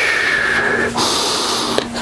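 Audible breathing into a close microphone: a long breathy draw, then a sharper hiss through the teeth about a second in, voicing the inhale-exhale breath pattern of the exercise.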